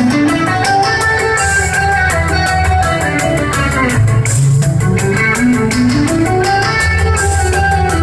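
Rock band playing live, an instrumental passage of guitars over a steady drum beat, heard through a crowd recording in the venue.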